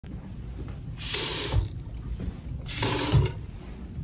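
Two brief bursts of water from a bathroom sink faucet, each lasting under a second and ending in a low thump.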